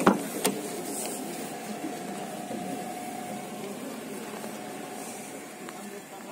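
Daewoo Matiz rear door handle pulled, with two sharp latch clicks in the first half second as the door opens. A steady background hum with a faint thin tone runs through the rest.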